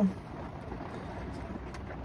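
Steady low background noise with no distinct sound events.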